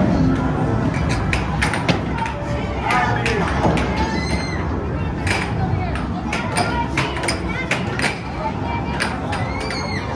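Busy arcade and bowling-alley din: background chatter with arcade-game music and electronic tones, and many sharp clacks scattered throughout.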